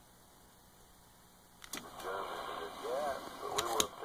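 AM CB radio dropping from transmit to receive: near silence for about a second and a half while keyed, then a click and a faint, thin, garbled voice from a distant station comes through the receiver's speaker, broken by a few sharp clicks.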